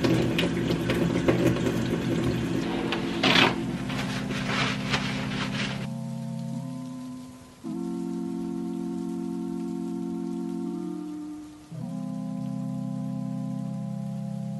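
Kitchen tap running over hands being washed, water splashing for about the first six seconds, with background music underneath. After that there is only soft background music of long held chords that change every few seconds.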